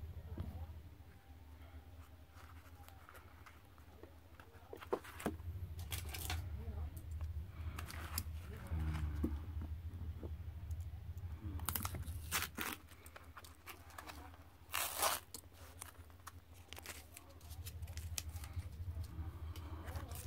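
Masking tape being pulled and torn off a freshly spray-painted model locomotive body, in short ripping strokes, the strongest about five, six, eight, twelve and fifteen seconds in, over a steady low hum.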